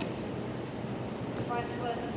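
Steady whooshing noise of a large drum fan running in a gym, with a woman's voice briefly starting near the end.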